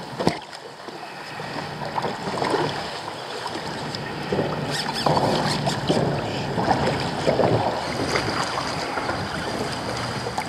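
Choppy water slapping and splashing against a sit-on-top kayak's hull as it drifts with the fish, with wind on the microphone. A single sharp knock comes just after the start.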